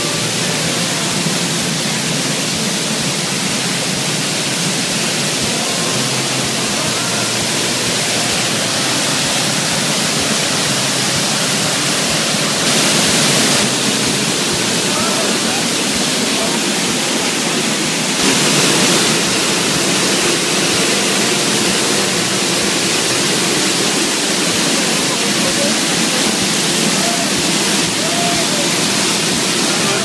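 Waterfall close at hand: a loud, steady rush of water falling onto rocks, growing briefly louder twice around the middle.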